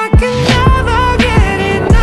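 R&B-pop song: a male voice sings a held, gliding line over a beat with several deep kick drums that drop in pitch.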